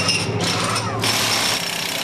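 Pneumatic wheel gun on a V8 Supercar's centre-lock wheel nut during a pit stop, rattling in several short bursts. The last burst comes about a second in. A steady low hum runs underneath.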